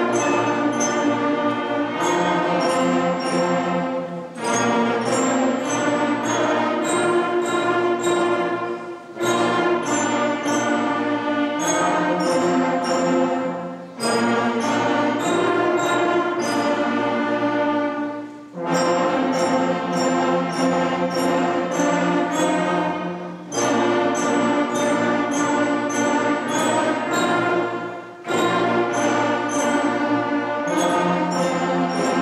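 A sixth-grade concert band playing full ensemble chords with brass, in phrases of a few seconds with brief breaks between them.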